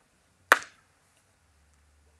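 A single sharp click about half a second in: a small cylindrical magnet snapping down onto a clear acrylic quilting ruler lying on a Sew Tites magnetic cutting mat.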